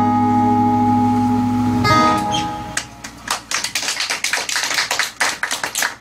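Two acoustic guitars letting a final chord ring, which stops about two seconds in; then an audience claps.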